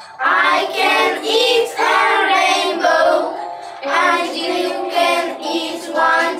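A small group of young children singing a song together in English, in sung phrases with a brief break about three and a half seconds in.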